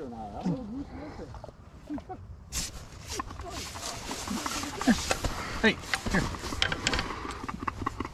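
Rustling and a run of sharp clicks and knocks as gear is handled in a fabric hunting blind, with a hand on the PBBA air shotgun and its braided air hose. Low, wavering calls sound for the first two seconds or so, before the handling starts.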